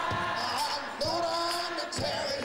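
Unaccompanied gospel singing: voices holding long notes over a steady beat of foot stomps and hand claps.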